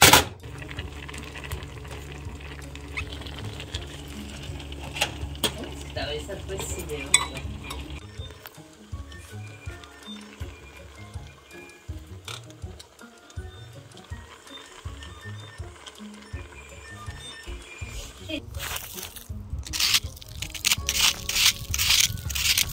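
Background music over kitchen sounds: fruit sizzling in a pan on an electric stove, and a ladle stirring and clinking in a saucepan. A few louder noisy bursts come near the end.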